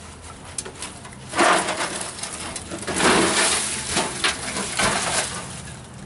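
Scrap sheet metal being handled and shifted, a run of rattling, scraping clatter that starts about a second and a half in and eases off near the end.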